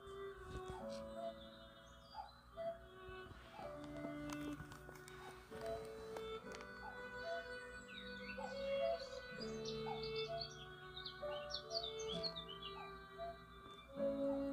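Soft instrumental background music in slow held chords, with birds chirping over it in the second half.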